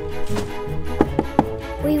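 Three quick knocks on a front door about a second in, over background music.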